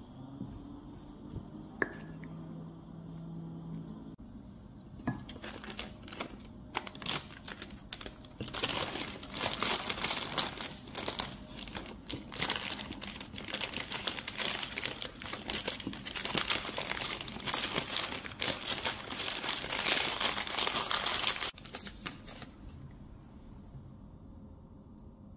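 A few quiet seconds of a wooden spoon mixing rice in a ceramic bowl, then a long stretch of loud, crackling crinkling as a sheet of white paper is wrapped and squeezed around a ball of rice to press it into an onigiri. The crinkling stops abruptly near the end.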